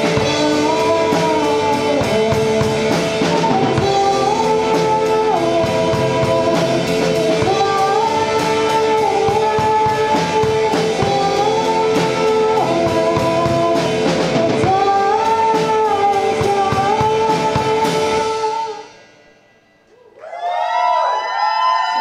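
Live rock band playing: electric guitar, bass guitar, drum kit and a woman singing lead. The song stops about nineteen seconds in, followed by a brief lull and then a voice near the end.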